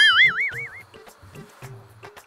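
Cartoon-style wobbling whistle sound effect, its pitch swinging up and down about five times a second, fading out within the first second.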